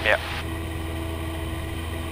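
Cessna 172P's four-cylinder Lycoming O-320 engine and propeller droning steadily in flight, a constant hum with no change in pitch.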